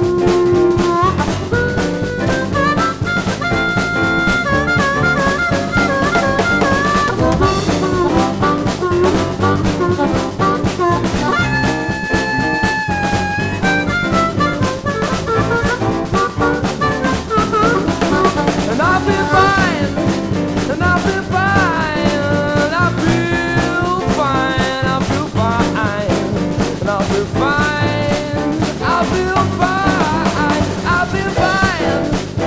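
Instrumental passage of a band playing a jazz-pop song: a drum kit keeps a steady beat under a pitched lead melody that bends and slides between notes.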